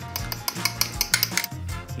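Background music with quick, repeated clinks of a metal spoon against a small ceramic sauce pot.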